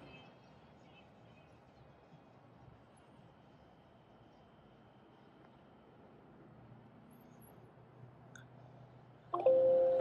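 Near silence with faint room tone for most of the stretch, then about nine seconds in a laptop's Windows alert chime, a short steady ding, as a warning dialog pops up.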